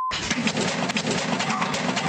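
Dense rattling and clattering over a noisy rumble as a house shakes in an earthquake, picked up by a Ring home security camera's microphone.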